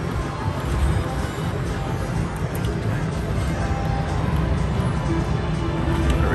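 Slot machine game music and spin sounds over the steady din of a casino floor.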